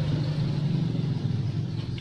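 A vehicle engine running: a low, steady rumble that eases off a little near the end.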